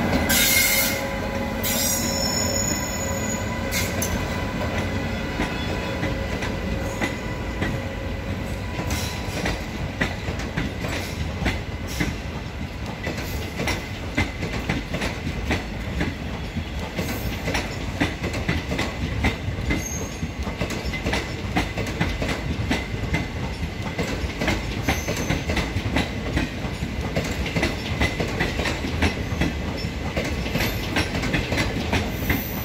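An express train departing past the platform: the WAP-5 electric locomotive goes by first, then its passenger coaches roll past. The wheels click sharply and densely over the rail joints. A thin, steady whine is heard in roughly the first dozen seconds.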